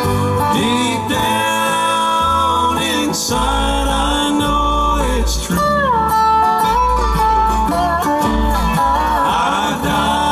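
Bluegrass band playing live: mandolin, five-string banjo, acoustic guitar, upright bass and dobro, with notes sliding in pitch over a walking bass.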